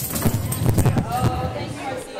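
Voices talking over a quick, irregular run of knocks and clatter as people get up from their seats and move about on a hard floor.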